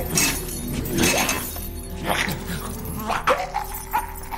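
Snarls from a chained zombie, with metal chains rattling and clanking sharply as he strains against them.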